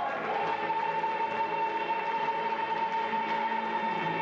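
A stage chorus and its accompaniment hold one long final note of a show tune. The note sustains steadily at a single pitch over the full ensemble.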